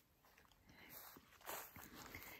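Near silence, with faint rustling footsteps in grass: two soft swells, about a second in and again halfway through.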